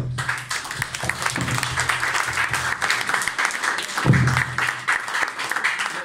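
A small audience clapping, a dense patter of many hands, right after a speech ends.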